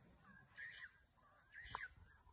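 Two faint, short, harsh bird calls about a second apart.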